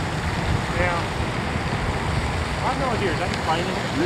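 Wind noise on the microphone, a steady rush, with faint voices about a second in and again near the end.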